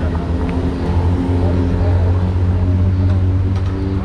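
A heavy engine running at a steady pitch close by, with a strong low hum that grows louder about a second in and holds, under the murmur of people talking.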